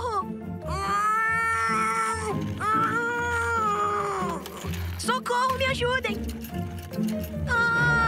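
Cartoon theme music with a sung vocal: a few long, held notes over a steady backing.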